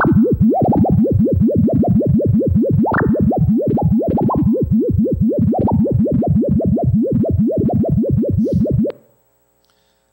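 A synthesized, phase-modulated tone sonifying the level fluctuations of a 50-level circular unitary ensemble random matrix, played through loudspeakers. It is a rapid run of rising pitch chirps, about five a second and uneven in strength, that stops about nine seconds in.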